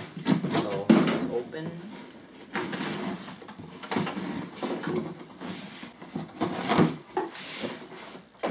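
Packing tape on a cardboard shipping box being slit with a knife and the flaps pulled open: several irregular strokes of scraping and tearing tape and cardboard.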